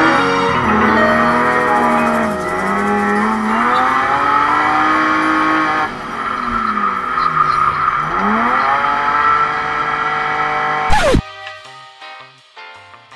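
Drift car's engine heard from inside the cabin, revving up and down repeatedly through the slides, with tyres squealing and music playing underneath. The sound cuts off suddenly near the end.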